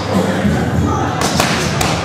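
Boxing gloves punching a trainer's focus mitts during pad work: a quick combination of three sharp thumps about a second in.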